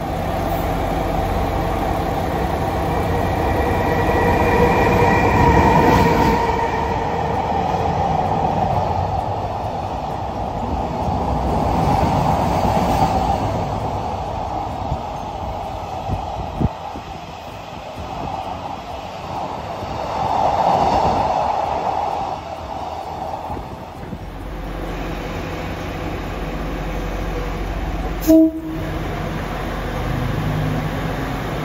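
A freight train of container wagons rolling past close by, a steady rumble with clattering wheels and swelling noise. A high steady tone sounds for a few seconds near the start, and a short sharp blip comes near the end.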